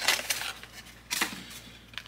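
Small plastic clicks and rustling as a lip balm and lip mask set is unpacked and handled. The sounds are busiest at the start, with another short rustle about a second in.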